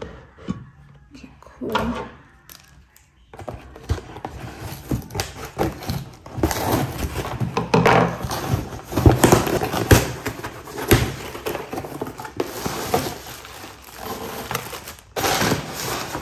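Cardboard box being torn open by hand, its flaps ripping and crackling irregularly, starting a few seconds in and going on in short bursts.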